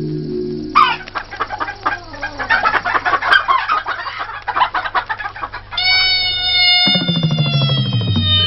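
Telugu film-song music with a run of rapid hen-like clucking sounds for about five seconds. This gives way to a long held note that slides slightly down in pitch, with bass notes coming in near the end.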